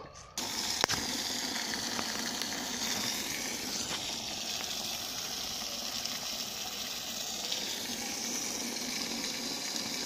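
Thin stream of water running steadily from a wall spout and splashing onto stone, setting in abruptly just after the start, with a single sharp click about a second in.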